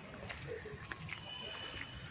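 Footsteps on a wet paved path, a few light irregular clicks, over a faint outdoor hum. A thin, steady high tone sounds for just under a second about halfway through.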